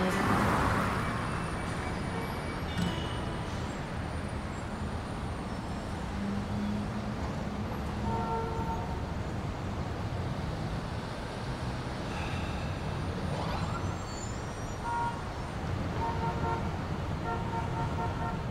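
Road traffic noise from a car driving on a city street: a steady rumble of engine and tyres, swelling as a car passes at the start. A few short horn toots sound in the middle and near the end.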